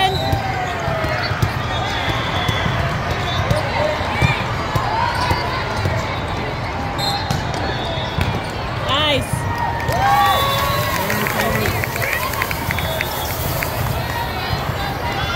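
Indoor volleyball rally in a large hall of courts: a steady babble of voices and shouts, broken by sharp hits of the volleyball.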